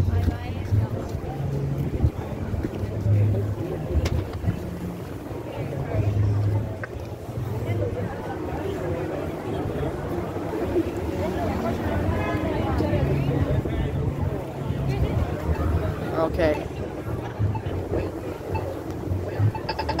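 Busy city street noise, with wind buffeting the phone's microphone in irregular low rumbles and passersby talking.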